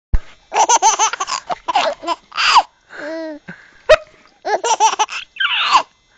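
Baby laughing in repeated bursts of high-pitched giggles. Two sharp knocks come through, one right at the start and one about four seconds in.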